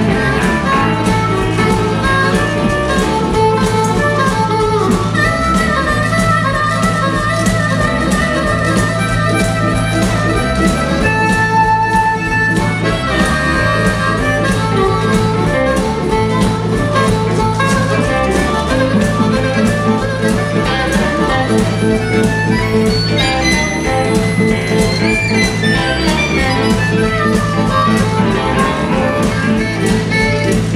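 Live blues band jam: electric guitars, drums and amplified harmonica playing over a bass riff that repeats about every two seconds.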